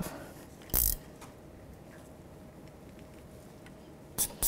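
A single short knock from the box-end wrench on the brake caliper's banjo bolt about a second in, then quiet with a faint steady hum and a couple of faint ticks.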